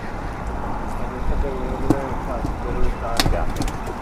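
Steady low rumble of wind on an open-air action-camera microphone aboard a small boat, with faint voices and a few sharp clicks about three seconds in as a fishing line is reeled and handled.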